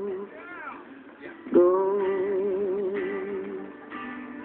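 A woman singing slow, long held notes with a wide vibrato over soft accompaniment: one note fades out at the start, and after a short pause a new note swells in about a second and a half in and is held for about two seconds. The sound is a TV speaker's, recorded off the set, thin and without any high end.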